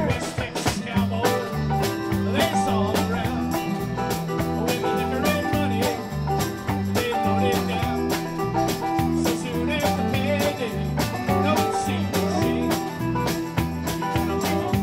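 Live band playing a country-rock tune on electric guitars and a drum kit, with a steady beat.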